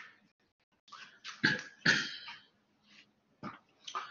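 A man coughing twice in quick succession about a second and a half in, with faint rustling around it.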